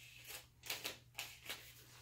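Faint handling noises: a few soft taps and rustles spread through the pause, as gloved hands work at the edge of the MDF board.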